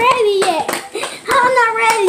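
A child vocalizing in long, drawn-out tones, with a few sharp hand claps or slaps.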